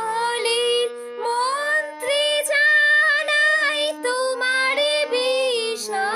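A woman singing a line of a Bengali song in a sliding, ornamented style, with a harmonium playing along under her voice.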